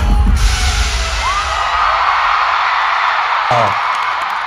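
Bass-heavy pop music cuts off about half a second in. Applause and cheering with a whoop follow.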